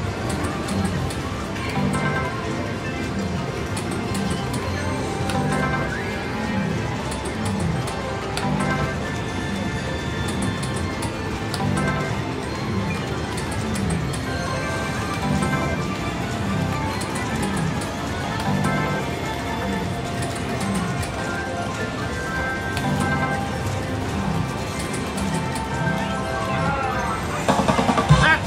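Music with a steady low beat, mixed with electronic slot machine sounds as a Double Diamond Respin machine spins its reels. Near the end, a rising electronic jingle as the machine hits a jackpot handpay.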